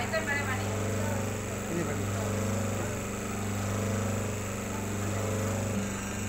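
Electric motor and hydraulic pump of a semi-automatic hydraulic paper plate making machine running with a steady low hum.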